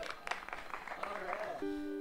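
Acoustic guitar picked up and strummed lightly, with a chord held ringing near the end, over scattered crowd voices and small clicks.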